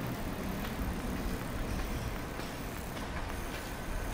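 Street ambience: a steady low rumble of city traffic, with a few faint light ticks.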